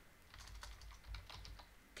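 Typing on a computer keyboard: a quick run of faint key clicks as a word is typed.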